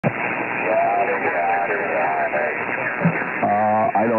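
Voices received over an 11-metre CB radio, muffled and hard to make out, with a steady hiss of static beneath them. The sound is thin and narrow, as through a radio speaker, and a voice holds a long drawn-out 'uhh' near the end.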